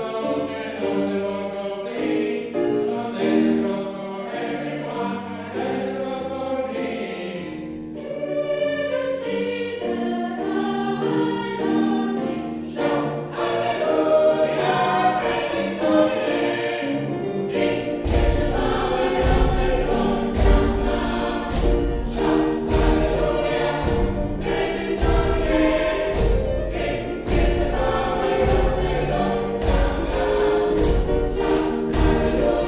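Mixed chamber choir singing a gospel song in harmony, with grand piano accompaniment. From about halfway through, a regular beat of low thumps joins the singing.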